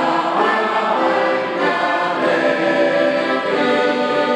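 A group of voices singing a song to an accordion played alongside.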